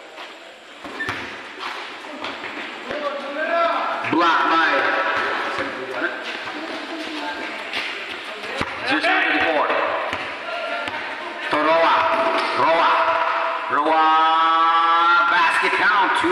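A basketball bouncing and thudding on a concrete court, with scattered impacts among players' shouts and voices. A long drawn-out shout comes near the end.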